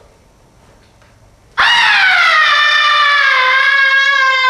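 Faint room tone, then about one and a half seconds in a loud, high vocal cry bursts in abruptly, sliding down in pitch and settling into a long held note. It sounds like a woman's voice, a scream that turns into a sustained sung tone.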